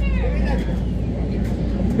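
Steady low rumble of dirt-track race car engines running in the background.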